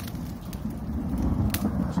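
Distant thunder, a low, steady rumble that grows a little louder, with a single sharp click about a second and a half in.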